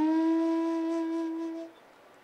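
Bansuri (Indian bamboo transverse flute) holding one long, steady note that fades out shortly before the end, closing a phrase.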